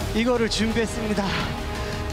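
A man speaking into a headset microphone over background music.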